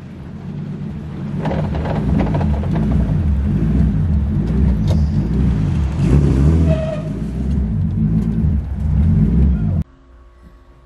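Car engine running with a heavy low rumble, heard from inside the car, building up as the car pulls away. The sound cuts off abruptly near the end.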